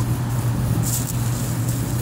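Outdoor air-conditioning unit running: a steady low hum under a constant rushing noise.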